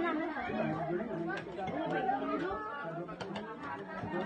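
Several people chatting at once, overlapping conversation, with a few short clinks of spoons and plates about a third of the way in and near the end.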